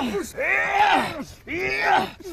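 A man moaning in pain: two long, drawn-out cries, each rising and then falling in pitch.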